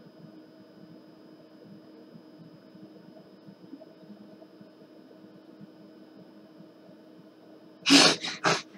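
Faint steady electrical hum from a microphone, with a few thin steady tones. Near the end comes a sudden loud burst from a person's voice, like a sneeze or a burst of laughter.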